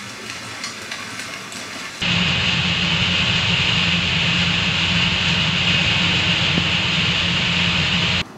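For about two seconds, faint splashing of leaping carp plays from a television. Then the sound cuts abruptly to a loud, steady rushing hiss with a low even hum beneath it, from a kitchen range hood fan running over the stove.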